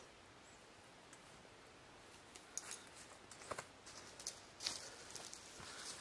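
Faint rustling and small clicks as a Gossamer Gear The One trekking-pole tent's fabric and fittings are handled and adjusted during pitching, starting about two seconds in.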